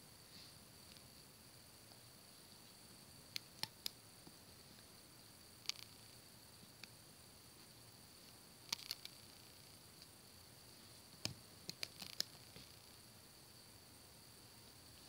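Near silence broken by faint, scattered small clicks and taps, in a few clusters, as rubber loom bands are stretched and laid onto the plastic pegs of an Alpha Loom. A faint steady hiss runs underneath.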